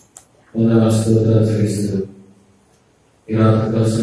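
A man's voice, a preacher speaking into a microphone in Telugu, in two long held phrases with a pause of more than a second between them.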